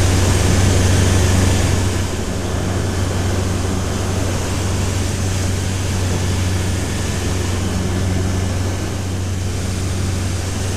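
Microlight aircraft's engine and propeller droning steadily in flight, heard from inside the cockpit over a constant rush of airflow noise. The level dips slightly about two seconds in and then holds steady.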